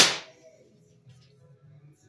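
A single shot from a Walther Reign PCP bullpup air rifle right at the start, a sharp crack that dies away within about half a second. It clocks 852 on the chronograph, its velocity still climbing as the fill pressure drops toward 150 bar.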